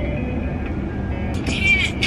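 A song playing over the car stereo inside the cabin, over a steady low rumble, with a short high vocal note about a second and a half in.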